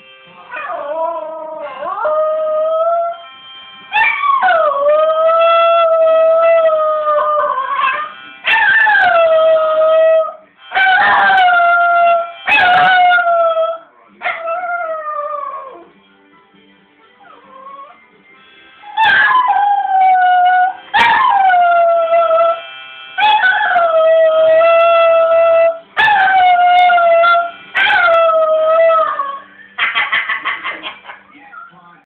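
A Border Terrier howling along to a harmonica: about nine long howls, each opening with a short falling slide and then holding a steady pitch. Harmonica tones play under the howls, with a quieter stretch around the middle.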